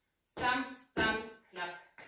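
A woman's voice saying short words in four brief bursts, with small gaps between them: speech only.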